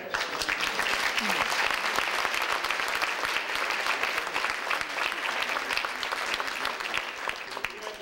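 An audience applauding: steady, dense clapping that starts at once and dies away near the end.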